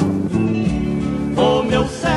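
Instrumental passage of a 1970s sertanejo raiz song, with guitar accompaniment and held notes, between sung lines.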